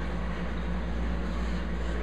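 Steady low hum with an even hiss from a running reef aquarium's pumps and water circulation.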